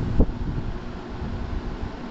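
Low rumbling noise buffeting the microphone, like wind on it, with one short thump about a fifth of a second in.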